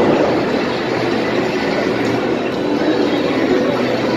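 Loud, steady din of a video arcade: many game cabinets' electronic sounds and sound effects running together into one continuous noise.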